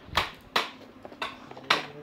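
Four sharp knocks, irregularly spaced. The loudest comes just after the start and another near the end, with a weaker one between.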